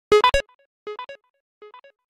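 Ola driver app's incoming-booking alert tone ringing on a phone, signalling a ride request waiting to be accepted: a short three-note electronic figure, loud at first, then repeated about a second in and again near the end, each repeat quieter, like an echo.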